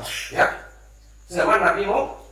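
A man speaking in Indonesian into a handheld microphone: a short phrase at the start, a pause, then another phrase from about a second and a half in.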